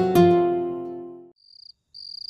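A plucked-string music cue ends on a chord that rings and fades out over about a second. Then crickets chirp twice near the end, short high-pitched chirps of night ambience.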